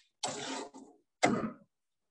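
A person clearing their throat: a rough burst about half a second long, then a shorter one.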